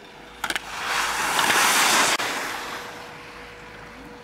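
Skis sliding and scraping over snow as a skier turns past: a rising hiss that cuts off abruptly, then trails away. A brief click comes just before it.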